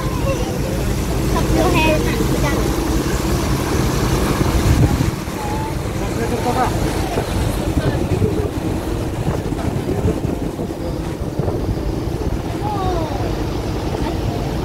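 Passenger boat under way: a steady low engine hum with wind and water noise, and passengers' voices scattered in the background. The hum drops to a lower level about five seconds in.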